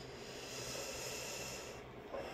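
A faint breath out, a soft hiss that swells about half a second in and fades near the end.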